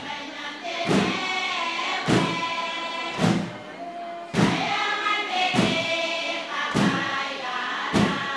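A choir singing over a steady beat, with a thump landing about once every 1.2 seconds.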